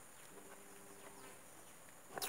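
Faint buzz of a flying insect passing near the microphone for about a second, starting just after the beginning, over a very quiet background.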